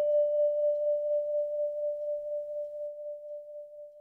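The final note of a jingle: a single bell-like tone ringing out and slowly fading away, with a gentle pulsing as it dies.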